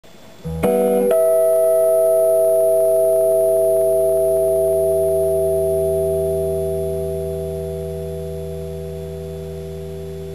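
Gold-top Les Paul-style electric guitar: a chord struck about a second in and left to ring, holding steady and then slowly fading from about six seconds.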